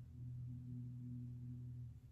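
A steady low hum at one pitch that cuts off suddenly near the end.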